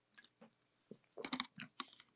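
Faint mouth sounds of drinking water from a bottle: a few soft swallows and small clicks of the lips and mouth, bunched together about a second in.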